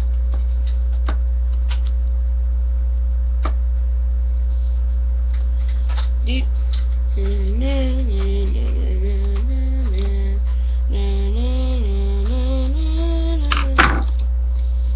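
A person hums a wordless tune in held, stepping notes from about six seconds in, over a steady low electrical hum that runs throughout. A few faint clicks are scattered through, with a short louder noise just before the end.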